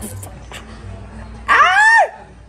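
A person's loud, high-pitched yelp about a second and a half in, rising then falling in pitch, as a lip ring snagged in a fishnet top tears at the lip. Before it, low murmuring.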